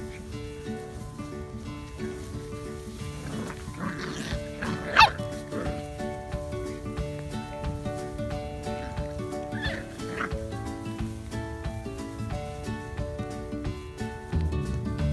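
Puppy yelping during rough play: one loud, high yelp about five seconds in and fainter yelps around four and ten seconds in, over background music with steady notes.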